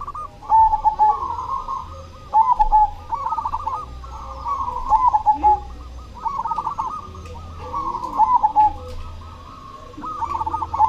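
A zebra dove (perkutut) singing its cooing song, a phrase of quick rolling coos repeated about every two seconds, five times.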